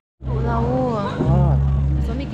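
People's voices in a hall over a loud, steady low hum or bass drone that swells about a second in. The sound cuts out completely for a moment at the very start.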